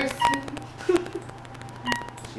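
Elevator button panel beeping: two short high beeps, one just after the start and one near the end, as floor buttons are pressed.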